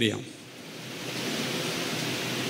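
A steady hiss builds up during the first second after a man's voice stops, then holds even.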